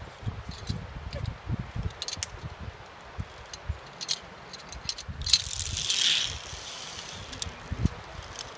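Zipline harness gear clicking and rattling: scattered sharp metal clicks over a low, uneven rumble, with a brief hiss swelling and fading about five to six seconds in.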